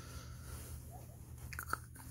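Faint crackly rustling from a plush toy being handled, over a low steady hum. A short voiced sound begins near the end.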